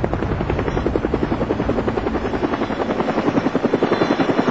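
Helicopter rotor blades chopping steadily: a fast, even pulse that runs without a break.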